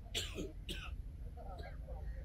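A person close to the microphone clearing their throat in two short, harsh bursts in the first second, with faint voices after and a steady low rumble underneath.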